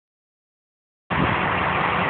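A stretch party bus's engine running close by, a steady low hum in a wash of street noise, cutting in abruptly about a second in.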